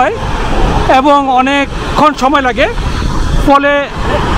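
A man speaking Bengali in three short phrases, with a steady low rushing noise filling the pauses between them.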